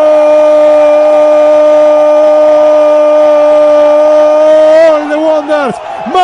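A radio football commentator's long goal cry: one loud "gol" held on a single steady pitch for about five seconds. Near the end it breaks into short excited shouts.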